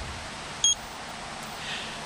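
Digital stopwatch giving a single short, high beep as it is started.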